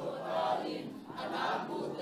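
A congregation of many voices reciting together in unison, the sound rising and falling in phrases.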